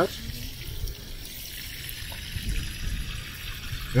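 Water sprinkling from the rose of a plastic watering can onto loose, freshly turned soil: a steady, soft hiss.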